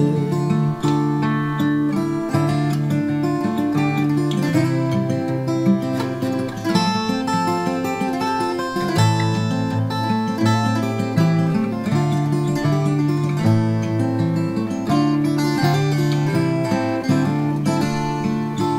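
Martin 000-42VS steel-string acoustic guitar picked in an instrumental passage: a melody line over changing bass notes, with no singing.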